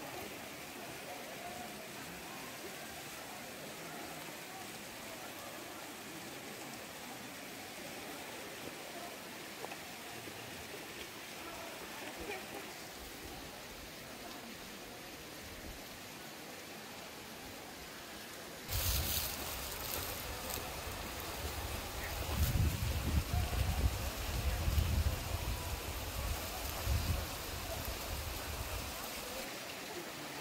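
A thin waterfall splashing down a cliff face, with faint distant voices. About two-thirds of the way through, a much louder rumbling noise starts suddenly and rises and falls irregularly.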